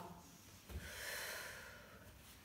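A woman's single audible breath, a soft airy breath lasting about a second, starting just under a second in.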